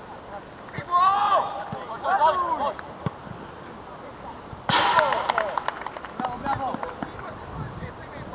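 High-pitched shouts and calls from young football players across an outdoor pitch, with a short sharp noisy burst about five seconds in.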